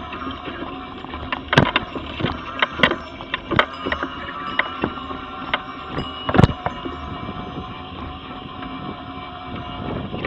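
Mobility scooter's electric motor running with a steady whine as it rolls along a pavement of paving slabs, with sharp knocks and rattles as it jolts over the joints, the loudest knock about six seconds in.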